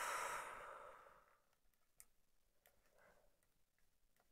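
A woman's long breathy sigh that fades away over about a second, then a few faint ticks as the rod and glass bowl are handled.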